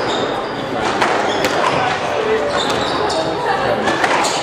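Squash ball being struck by rackets and hitting the court walls during a rally, a sharp crack roughly once a second, echoing in the court, over background chatter.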